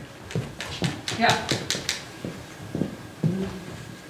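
A short spoken "ja" with scattered voice sounds in a hall, and a quick run of short, sharp taps in the first two seconds.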